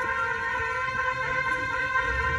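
Jaling, Bhutanese ceremonial shawms, holding a long steady note.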